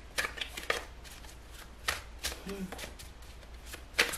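A tarot deck being shuffled and cut by hand: a string of short, irregular snaps and slaps of the cards.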